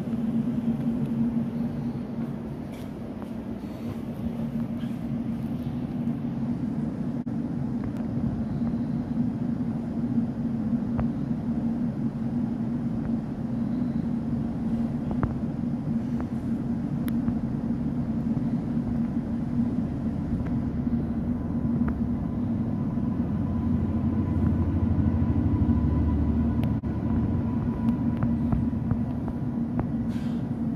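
Cabin noise of a Class 710 electric multiple unit under way: a steady hum over the running rumble. In the second half a freight train passes close on the adjacent track, and the low rumble swells as its locomotive and container wagons go by.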